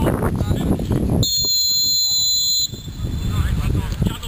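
Referee's whistle, one steady shrill blast of about a second and a half starting about a second in, stopping play for a foul.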